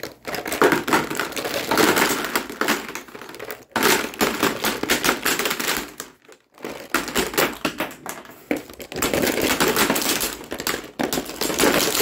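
Lipstick and lip gloss tubes clattering into a plastic tub as they are dropped in one after another: a fast, dense run of small plastic and metal clicks, with two brief pauses.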